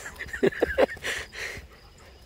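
Puppies play-fighting: scuffling with three quick, short vocal sounds from the dogs, each dropping in pitch, about half a second in.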